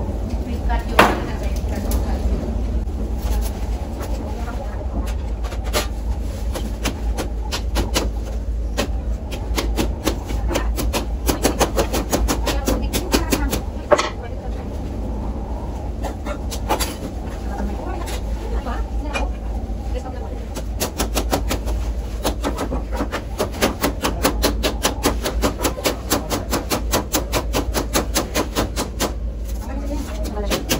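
Rattan strands of a rattan chair frame being cut, snapped and pulled apart: many sharp clicks and cracks, coming thick and fast in the second half, with voices talking in the background.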